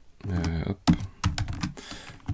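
Computer keyboard keystrokes: a quick run of sharp clicks in the second half, as a command is entered in a terminal.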